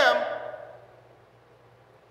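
A man's loud, unamplified voice ends a word and its echo dies away in a large hall over about half a second, leaving quiet room tone with a faint steady low hum.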